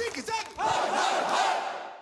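A crowd of many voices shouting and cheering together, fading away toward the end.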